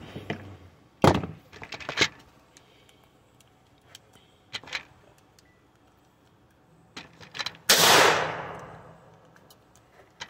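.22 LR gunshots from CCI Stinger high-velocity rounds: two sharp cracks about a second apart near the start, then a louder shot about eight seconds in with a long echoing tail.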